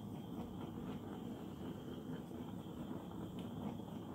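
Small handheld torch flame running steadily, played over wet acrylic pour paint to pop the air bubbles.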